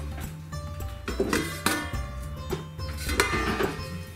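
Background tabla music: struck, ringing tabla strokes over a steady low drone.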